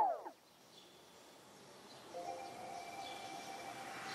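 Electronic background music ending with a quick downward slide in pitch. A near-silent gap follows, and faint, steady chime-like tones of the next track begin about two seconds in.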